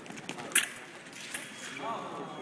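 Fencing exchange with foils: a loud, sharp clack about half a second in as the attack is parried, with footwork on the hall floor. About a second and a half in, the electric scoring machine starts a steady high tone, signalling the riposte's hit, which landed off target.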